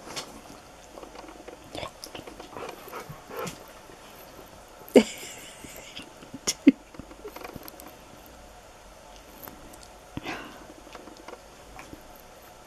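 Husky making short fussing vocal sounds at a treat held to its nose: a louder call about five seconds in, two short sharp sounds just after, and another call near ten seconds, between small licking and mouth noises.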